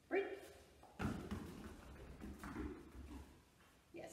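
A short voiced sound right at the start, then about two seconds of soft thuds and rustling as a dog shifts and moves on the carpet into position beside the handler.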